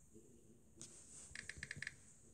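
A quick run of about seven soft clicks within half a second near the end: keys typed on a tablet's on-screen keyboard.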